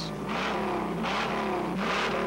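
Ford 428 Cobra Jet V8 of a 1969 Mustang Mach 1 being revved in repeated blips, its pitch rising and falling.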